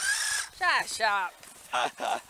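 Electric motor of a radio-controlled Polaris 800 RUSH Pro R model snowmobile whining at a high pitch for about half a second as it spins its track, the sled stuck in the slushy snow. A person's voice follows.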